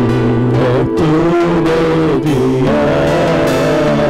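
Live worship band playing a slow gospel song: guitar, keyboard and drum kit, with men's voices carrying a wavering melody.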